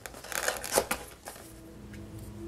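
Cardstock paper rustling and crinkling as a paper box is handled, in a few short bursts over the first second or so, then it goes quieter.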